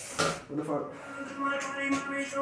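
A brief voice at the start, then music comes in with steady held notes.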